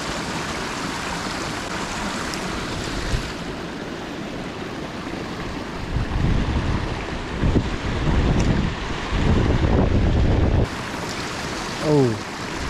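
Creek water running steadily over a small rock ledge. From about six seconds in, wind gusts rumble on the microphone for several seconds.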